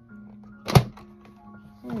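Metal watercolour paint tin being opened: one sharp metallic clack about three-quarters of a second in. It sits over quiet background music with sustained tones.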